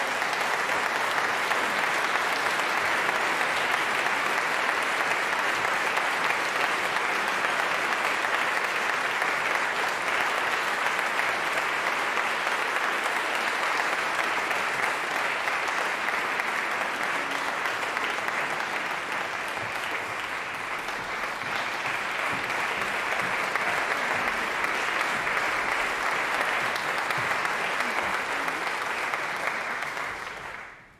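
Concert audience applauding in a sustained, steady round of clapping that eases a little around the middle and then picks up again.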